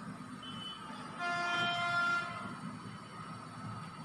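A horn sounds once, a single steady pitch lasting a little over a second, starting just over a second in.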